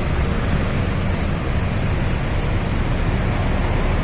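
An intercity coach's diesel engine runs low and steady as the bus pulls away, under a constant hiss of street noise.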